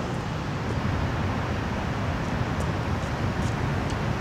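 Steady outdoor city background noise: a low rumble with a hiss over it, and a few faint high ticks.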